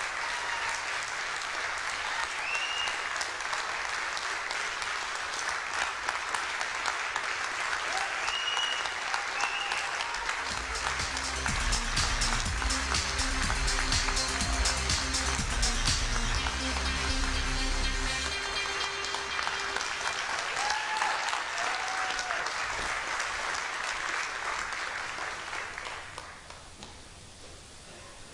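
An audience applauding and cheering. About ten seconds in, music with low held notes plays under the applause for about ten seconds. The applause dies down near the end.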